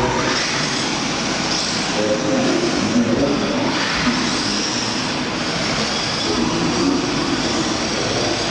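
Radio-controlled drift cars running in close tandem on a smooth indoor track: a steady hiss of tyres sliding, with motor whine that wavers in pitch.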